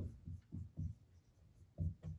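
Marker writing on a whiteboard: several short strokes in quick succession, a pause of about a second, then another stroke near the end.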